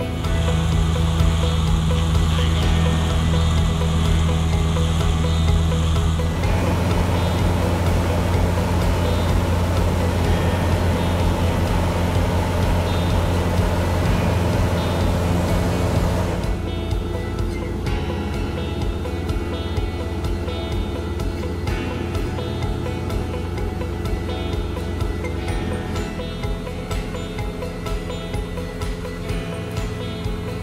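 Background music over the steady drone of a Cessna light aircraft's piston engine and propeller in flight, heard from the cabin. The sound changes abruptly about six seconds in and again near sixteen seconds.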